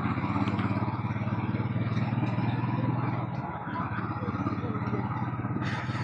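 Royal Enfield Classic 350's single-cylinder engine running at a steady cruise, with wind noise on the microphone. The engine eases off briefly a little past halfway, then picks up again.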